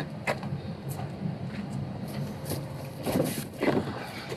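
Cardboard box rustling and scraping as it is lifted out of a pickup truck's bed, loudest near the end, over a steady low rumble.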